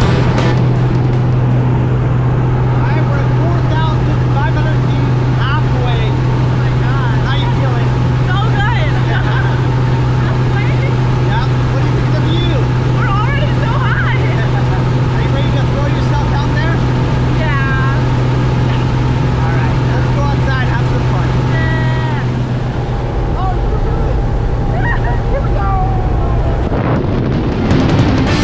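Small single-engine plane's engine and propeller droning steadily in the cabin, with voices over it. The drone shifts and eases near the end.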